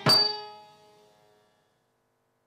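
Final stroke of a Bharatanatyam dance accompaniment: a metallic cymbal clang together with a drum hit, its ringing tone fading away within about a second.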